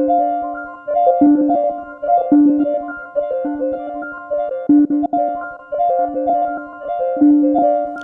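Eurorack modular synthesizer playing a clocked, repeating melodic pattern of keyboard-like notes: a recurring low note under a shifting higher line.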